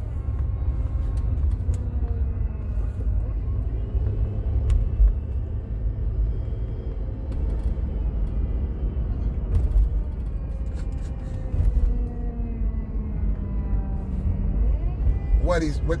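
Steady low rumble of a moving car heard from inside the cabin: engine and road noise while driving. Faint voice-like sounds and a few small clicks sit under it.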